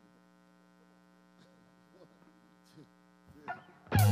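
Steady electrical mains hum from the live stage's amplified guitar and sound system between songs, with faint small noises over it. Near the end the electric guitar comes in loudly with the opening notes of the next song.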